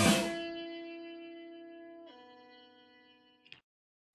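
A rock song's final chord: the full band stops at once, leaving electric guitar notes ringing and slowly fading. About two seconds in the ringing notes drop lower before dying away, with a small click near the end.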